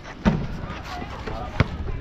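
A basketball striking the hard outdoor court: two sharp thuds, one near the start and a louder one about one and a half seconds in.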